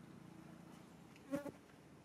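Faint, steady buzzing of a flying insect. A short, louder pitched blip comes a little past halfway through.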